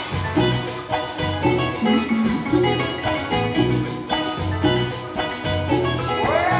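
Live Latin dance band playing an instrumental salsa passage: congas, a hand drum and a drum kit over a repeating bass line and bright pitched melody notes.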